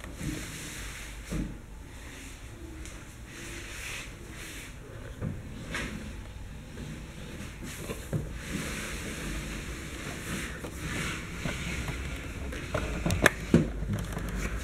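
A wooden starch tray being slid by hand along a table into position under a candy-moulding press: scattered knocks and scrapes of wood on the table, several in quick succession near the end, over a low steady background hum.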